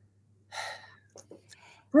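A woman's quick intake of breath about half a second in, followed by a few faint mouth clicks.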